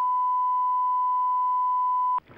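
A steady, unbroken electronic test tone, a pure single pitch of about a thousand hertz, inserted on the broadcast feed.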